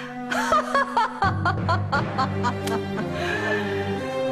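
A woman laughing in a quick run of short, high-pitched ha-ha pulses that die away about two and a half seconds in, over dramatic background music whose low bass comes in about a second in.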